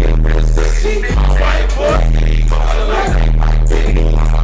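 Hip hop beat played loud over a live sound system, its deep sustained bass notes changing about every second, with a rapping voice over it.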